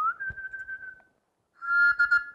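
A small hand-held pipe whistle blown twice: a first note that slides up and holds for about a second, then after a short pause a louder, steadier whistle starting near the end.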